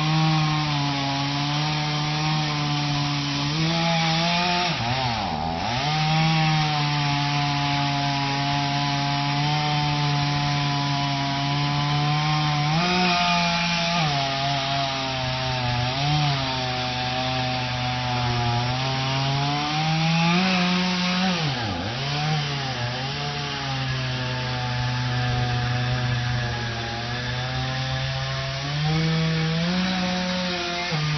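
Two-stroke chainsaw running steadily under load, cutting into the trunk of a standing tree. Its engine note drops sharply and picks back up twice, and rises briefly a few other times.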